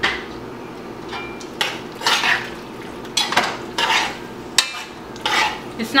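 Metal spoon scraping and knocking against the side of a metal cooking pot as a thick ackee-and-tofu mix is stirred, in a string of irregular strokes.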